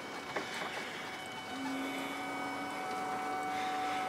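Forklift's electric motor running with a steady hum and whine, a lower steady tone joining about a second and a half in.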